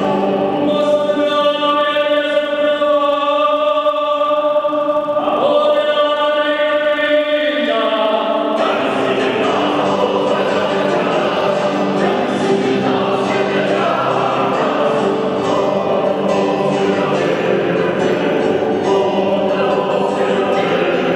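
Small mixed choir of men's and women's voices singing South American baroque repertoire. It holds long sustained chords through the first half, then moves into a busier, fuller passage about eight seconds in.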